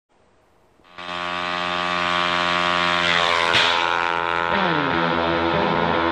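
Steady, high mechanical whine of aircraft engines starting about a second in, with a few tones gliding downward in pitch around the middle.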